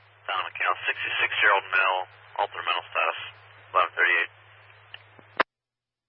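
A fire-service two-way radio transmission: a voice coming through narrow and tinny over a low steady hum, cut off by a squelch click about five and a half seconds in.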